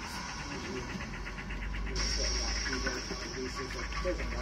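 Indistinct voices of people talking in the background over a steady low hum. A steady high hiss comes in about halfway through.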